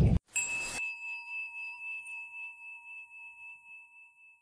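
A bell struck once and ringing out, two clear pitches sounding together and fading slowly with a pulsing waver.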